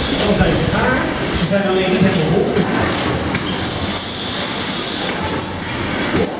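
Stroopwafel production-line machinery running with a steady mechanical hum, with people talking over it.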